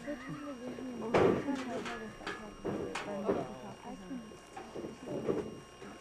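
Indistinct voices of people talking and calling out, with a loud sharp sound about a second in.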